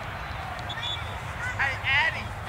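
Indistinct high-pitched calls and shouts of young players and spectators across an open field, loudest in the last half second, over a steady low rumble.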